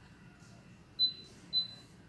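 Two short, high-pitched electronic beeps about half a second apart, the first louder.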